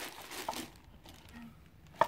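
Quiet room with faint handling of a round wooden turntable, including a soft click about half a second in as it is set in place.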